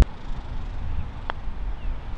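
Wind rumbling on the microphone, with one light click of a putter striking a golf ball on a short putt.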